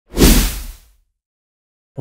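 A single whoosh sound effect with a deep low boom under it, the logo sting of a news programme's intro. It swells in quickly, peaks about a quarter second in and fades away within about a second.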